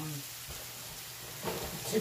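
Thin chicken cutlets frying in a cast-iron skillet greased with cooking spray, a steady sizzling hiss.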